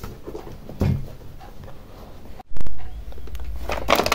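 Handling noises as sneakers are put on: a soft thump about a second in, then a brief dropout and louder low rustling and bumping.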